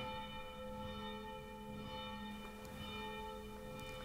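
Church bell ringing, its tones sustained and overlapping at an even level.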